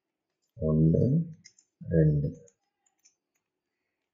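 Two short spoken words in a man's voice, with faint plastic clicks from an Axis Cube twisty puzzle being turned between and after them.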